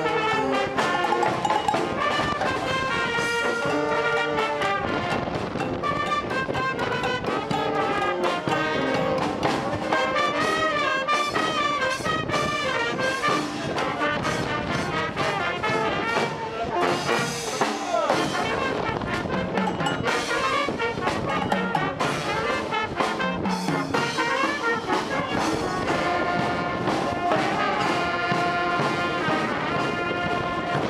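A banda, a festive brass band of trumpets, saxophones, sousaphone and drums, playing a pasodoble with a steady beat.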